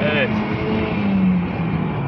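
Opel Vectra C's engine and road noise heard from inside the cabin at about 115 km/h under acceleration: a steady drone whose pitch dips slightly about a second and a half in.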